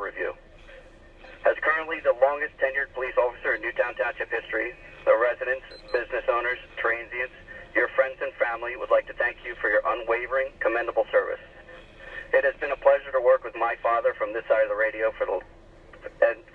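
A police dispatcher's voice over a patrol car's two-way radio, reading out a long announcement with short pauses. The voice sounds thin and narrow, as through a radio speaker.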